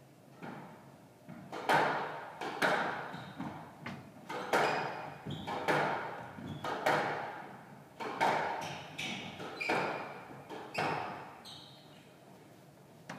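Squash rally: a rubber squash ball struck by racquets and hitting the court walls, a sharp echoing smack every half second to a second, about a dozen in all, ending shortly before the end.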